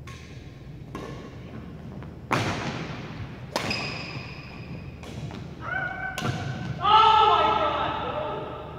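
Badminton rally: a series of sharp racket hits on the shuttlecock, one every second or so, each ringing on in a large gym hall. Near the end a loud voice calls out, the loudest sound.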